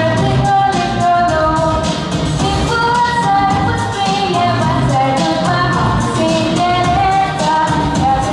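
A girl singing a pop-style song into a handheld microphone over a backing track with a steady beat, amplified through PA speakers.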